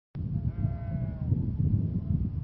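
A single drawn-out bleat from a farm animal, about a second long and falling slightly in pitch, over a low, uneven rumble of wind on the microphone.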